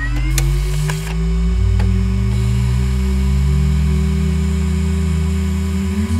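Synthesized logo-intro drone: deep low tones swell and glide upward at the start, then hold steady under a higher hum, with a few light clicks in the first two seconds.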